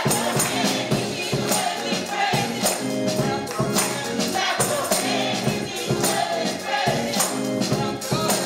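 Live gospel praise music: an electric organ holds chords under a drum kit and a shaken tambourine keeping a steady beat, with voices singing over it.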